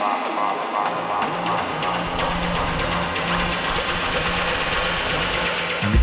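Electronic house music from a club DJ set. The bass is missing at first and fades in over the first couple of seconds, then heavy bass and beats come in right at the end.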